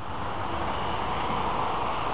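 A steady rush of road traffic passing on the road below, swelling slightly over the two seconds.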